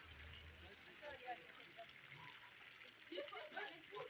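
Near silence: faint outdoor swimming-pool ambience, with distant voices and light splashing of swimmers in the water.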